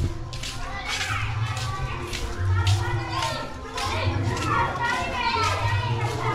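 Children's high-pitched voices shouting and chattering as they play, with low footstep thuds about once a second.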